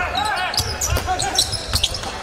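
Basketball dribbled on a hardwood court, a run of short repeated bounces, with arena background noise.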